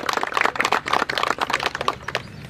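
A small group of people applauding with quick, irregular hand claps that stop near the end.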